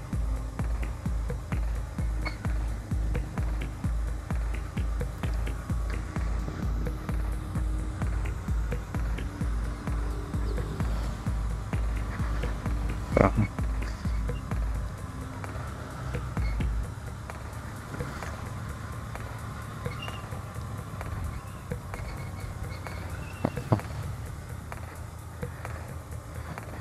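Background electronic dance music with a steady kick-drum beat of about two beats a second. The beat drops out about fifteen seconds in, and the rest is quieter.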